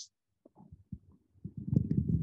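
Brief pause, then from about one and a half seconds in a low, muffled rumble of a handheld microphone being handled and raised toward the mouth.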